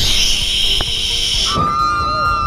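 Steady rushing hiss of a zipline ride. About a second and a half in, it gives way to a high, held scream from a speedboat passenger as spray hits.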